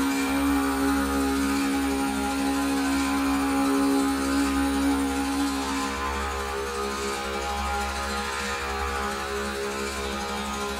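Slow meditative healing music: a sustained drone of many steady tones, with one held low note that stops about six seconds in.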